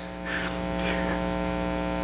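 Steady electrical hum with a stack of even overtones, holding one unchanging tone and slowly growing a little louder.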